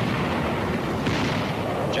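Battle sounds on an old newsreel soundtrack: artillery and gunfire with a continuous low rumble, and a fresh blast about a second in.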